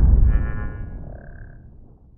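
Cinematic logo-intro sound effect: the tail of a deep boom dying away over about two seconds, with brief high ringing tones in the middle of the fade.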